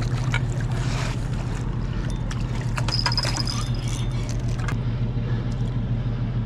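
A passing cargo barge's diesel engine droning steadily, low and with a regular pulse, with scattered light clicks over it.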